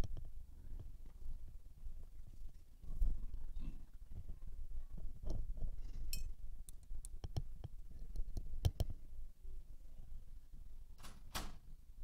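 Scattered light taps and clicks of painting tools being handled on a tabletop, with two sharper clicks about nine and eleven seconds in.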